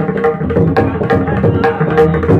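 Pakhavaj, the two-headed barrel drum, played in a fast run of sharp strokes with a ringing tuned pitch. A man sings a Marathi devotional abhang over it.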